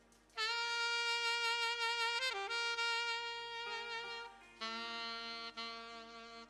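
Saxophone solo. A loud, long held note enters about half a second in, dips briefly in pitch just past two seconds and is held on. A quieter phrase of held notes follows after about four and a half seconds.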